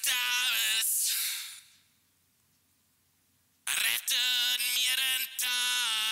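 A solo lead vocal, high-passed at about 6 kHz and squeezed hard by a 1176 compressor (UAD 1176LN) in all-buttons mode with fast attack and release, plays as two short sung phrases with a gap of about two seconds between them. T consonants still come through as transients.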